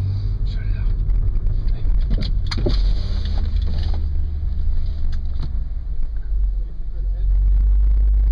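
Audi S4 engine and car noise heard from inside the cabin as the car rolls slowly: a steady low rumble with a few short clicks, getting louder near the end.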